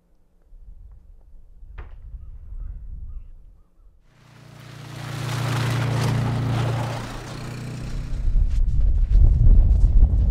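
A vehicle drives past on a wet ice road: a steady engine hum and tyre hiss come in suddenly about four seconds in, swell, then ease off. Near the end, gusty wind rumbles on the microphone.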